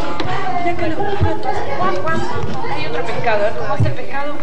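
Chatter of many overlapping adult and small-child voices in a room, with two dull thumps, about a second in and near the end.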